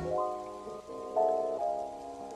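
Quiet background music: held, soft notes that step to new pitches every few tenths of a second, with no bass line.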